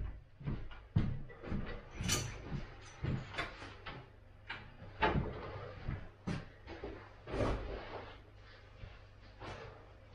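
Footsteps on a wooden floor and a string of short knocks and clatters as clothes are handled, then the rustle of a jacket being pulled on in the second half.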